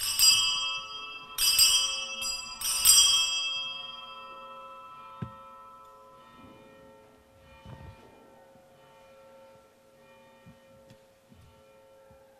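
Altar bells rung three times in quick succession, about a second and a half apart, each a bright jangle whose ringing dies away over the next second or so. This is the bell signal for the elevation of the chalice at the consecration.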